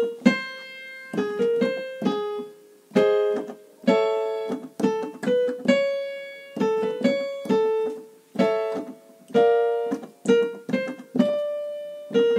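Piano accompaniment for a staccato–legato vocal warm-up: phrases of short, detached notes and held notes, struck one after another.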